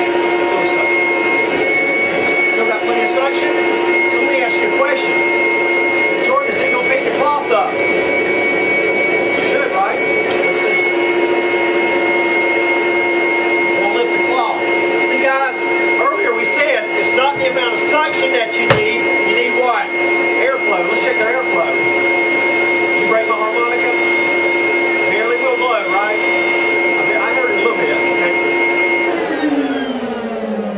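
Rainbow vacuum cleaner's motor running with a steady high whine while vacuuming a couch cushion, its pitch stepping slightly a few times. Near the end it is switched off and the whine falls in pitch as the motor spins down. Voices murmur faintly underneath.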